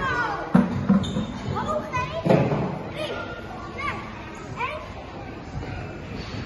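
Children shouting and calling in an echoing indoor play hall, with a few sharp thumps, the loudest about half a second in and again a little after two seconds.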